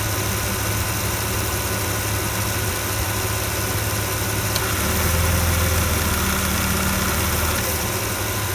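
Jeep engine idling with its AC compressor cycling while being charged with refrigerant. About halfway through, a click comes as the compressor clutch engages, and the engine note grows louder and heavier under the load for about three seconds before easing back near the end. The compressor is cutting in and out because system pressure is still building as refrigerant goes in.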